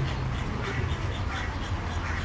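A flock of Chilean flamingos calling: many short calls overlapping, several each second, over a steady low hum.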